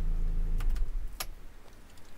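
Renault Safrane 2.0's idling engine cutting out under a second in, followed by a few sharp clicks from the key and door being handled.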